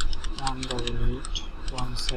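Computer keyboard being typed in a quick run of sharp key clicks as a string of digits and dots is entered. A man's low, drawn-out voice sounds about half a second in and again near the end.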